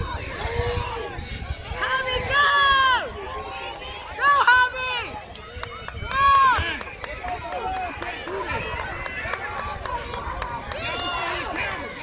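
Spectators shouting encouragement at relay runners: loud drawn-out calls about two, four and six seconds in, and another near the end, over a low background of voices.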